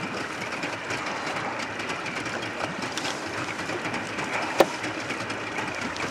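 Small fishing boat underway across choppy lake water: steady motor and wind noise with the hull's rapid slapping on the waves, and one sharp knock about four and a half seconds in.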